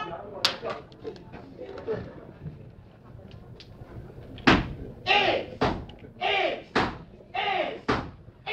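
Step team performing: one sharp stomp or clap early, then from about halfway in a run of loud, sharp hits from stomps and claps, each followed by a short shouted chant.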